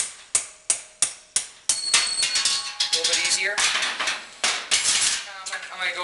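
Hammer blows on a steel drift rod of a steering stem bearing race removal tool, about three sharp metallic strikes a second, driving a bearing race out of a motorcycle's steering head. The strikes stop after about a second and a half and give way to metallic clattering and ringing.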